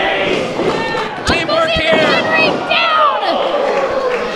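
Wrestlers' bodies slamming onto the wrestling ring canvas: two sharp thuds a little over a second in, about half a second apart, amid shouting voices.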